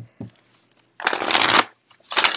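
A deck of tarot cards being shuffled by hand: a short crackling burst of card shuffling about a second in, and another starting right at the end.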